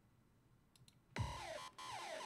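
Near silence with a couple of faint clicks. About a second in, an electronic music loop starts abruptly, full of falling synth glides: the freshly exported one-bar loop playing back as a preview in Ableton Live's browser.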